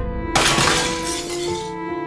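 Dramatic trailer music holding low, steady tones, with a sudden sharp crash about a third of a second in whose hiss fades away over a second or so.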